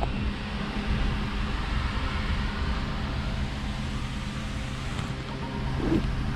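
A steady low hum with a rumble underneath, even throughout.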